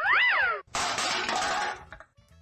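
Cartoon sound effects for a trash can of garbage being dumped. A short squeal rises and then falls in pitch, and then a clattering crash of junk lasts about a second.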